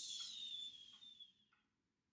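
A person's long, soft breathy exhale with a faint whistle falling in pitch, fading out about a second and a half in: a sleepy sigh or whistling breath mimicking dozing off.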